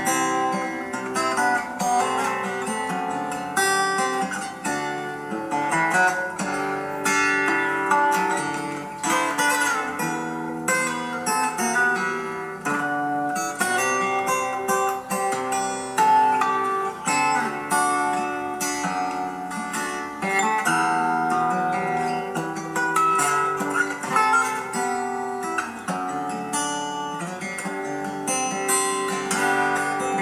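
Solo steel-string acoustic guitar played fingerstyle: a plucked melody over held bass notes, with no singing.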